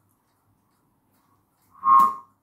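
3D-printed button whirligig whistle spinning on its pulled string. About a second and a half in it gives one short whistling tone, about half a second long, a sign that the button is at last spinning fast enough for its slots to whistle.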